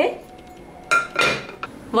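A glass lid set down on a glass bowl: one sharp clink about a second in, ringing briefly before it fades.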